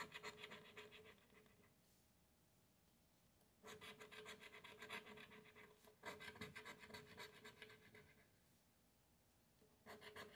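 A coin scraping the coating off a paper scratch-off lottery ticket: faint, rapid back-and-forth strokes in spells, broken by pauses of about two seconds, one after the first couple of seconds and one near the end.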